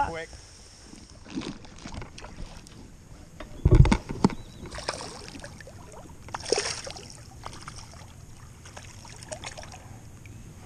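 Water splashing and lapping close to the microphone, with a loud low bump on the microphone a little under four seconds in and a brief splashing rush at about six and a half seconds.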